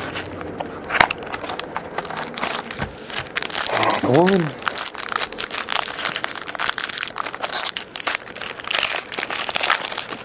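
A foil trading-card pack wrapper crinkling and tearing as it is handled and opened by hand, in dense, irregular crackles. About four seconds in, a man gives a brief hum that rises and falls in pitch.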